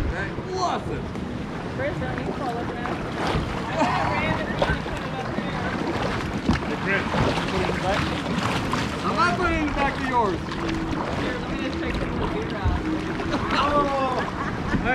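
Kayak paddling on a lake: paddle strokes and water against the hull, with wind buffeting the microphone and several people talking indistinctly in the background.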